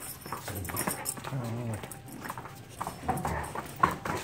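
Dogs play-fighting, with a low wavering growl about a second and a half in, amid scuffling and claws clicking on the hard floor.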